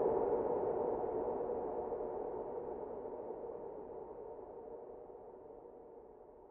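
A sustained, droning tone with a reverberant wash, fading out steadily and evenly until it is faint by the end.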